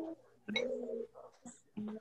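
A dove cooing in short, low, steady notes, twice in quick succession.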